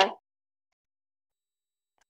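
Dead silence after a child's voice breaks off just at the start.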